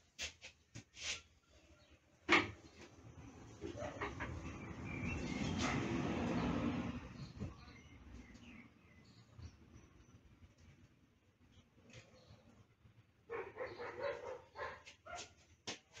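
Clicks and clunks from a combination planer-jointer being set up by hand for thicknessing, with a few seconds of scraping and rattling in the middle.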